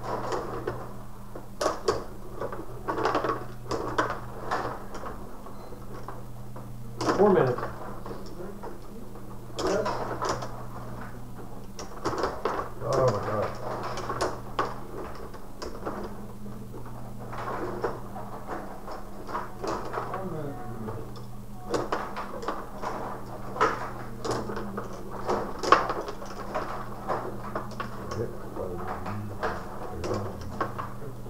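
Tabletop rod hockey game in play: metal control rods sliding and twisting in the table, with frequent sharp clacks of the player figures and puck striking each other and the boards, over a steady low hum.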